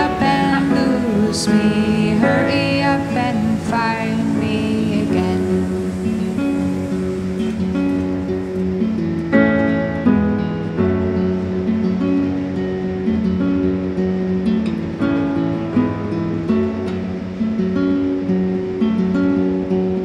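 Acoustic guitar strummed steadily through an instrumental passage of a folk song. A sung line trails off over the guitar in the first few seconds.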